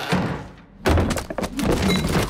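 Grocery items such as fruit, a can and a bottle dropping onto a wooden desktop: thunks and clatter, with a sudden dense burst of impacts about a second in.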